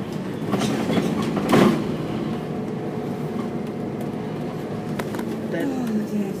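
Bus engine and cabin noise heard from inside a double-decker bus as it drives, a steady drone with a few held tones. A brief loud burst about one and a half seconds in stands out above it.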